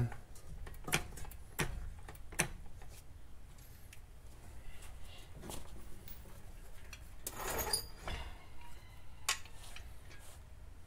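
A few light, scattered metallic clicks and knocks from car suspension and hub parts being handled, with a small cluster about three-quarters of the way through.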